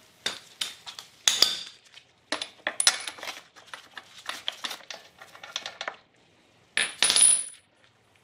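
Metal clinks and clicks as a socket and ratchet are handled and a spark plug is unscrewed by hand from a small two-stroke trimmer engine. The clinks come irregularly, and the two loudest, ringing ones come about a second in and near the end.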